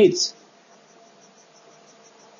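A pause on a video-call audio line: faint steady hiss with a faint, high, evenly pulsing tone about eight times a second.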